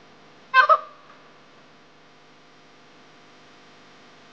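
A woman's short, high-pitched anguished cry in two quick sharp pulses about half a second in, over a faint steady room hum.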